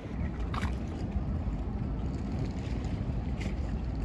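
Wind rumbling steadily on the microphone over open-air waterfront ambience, with a brief higher-pitched sound about half a second in.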